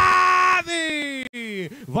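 A male sports commentator's voice, holding a long drawn-out syllable as a shot goes in on goal, then speaking on with falling pitch.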